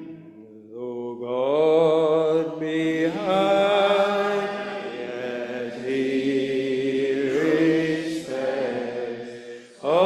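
Congregation singing a metrical psalm unaccompanied, in slow, long-held notes. The singing breaks briefly for a breath between lines about a second in and again just before the end, then starts up again.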